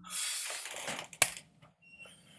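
A deep breath drawn noisily into a video-call microphone, a hiss lasting about a second and a half, with a sharp click near its end.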